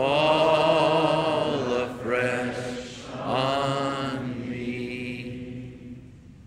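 Congregation singing a slow hymn in long held notes: three phrases, the last fading out near the end.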